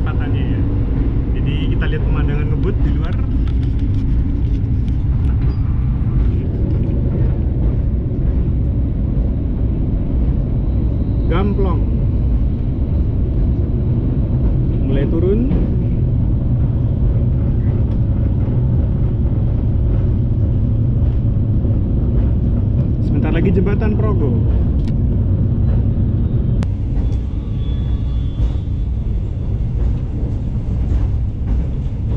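Steady rumble of a moving passenger train heard from inside an executive-class coach: wheels running on the rails and the coach's running noise, with a few short higher sounds over it.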